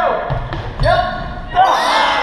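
A quick run of dull thuds, feet pounding on the gym floor and the curved wooden warped wall, under loud shouting from onlookers, which swells into a burst of cheering and yelling near the end.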